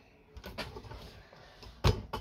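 Faint handling rustles on a desk, then one sharp knock near the end, as things are picked up and the camera is moved.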